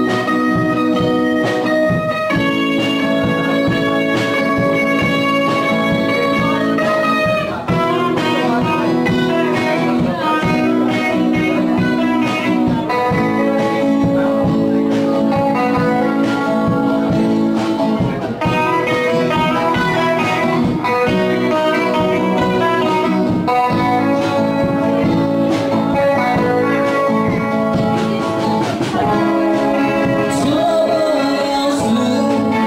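Instrumental intro of a Nepali Christian worship song played by a small live band: acoustic and electric guitars over sustained keyboard chords, the chords changing every two seconds or so, with no vocals yet.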